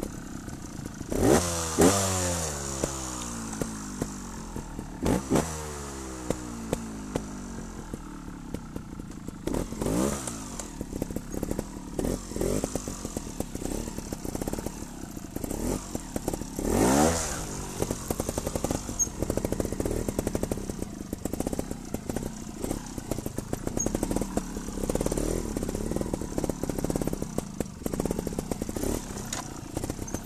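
Trials motorcycle engine ridden at low speed, blipped sharply several times, each rev sweeping up and falling away. The strongest blips come about a second in and again around seventeen seconds, with many short irregular knocks and rattles through the second half.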